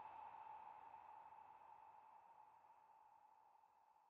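Near silence, with a faint steady tone slowly fading away.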